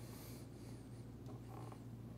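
Quiet room tone with a steady low hum and a few faint scuffs and rustles of movement.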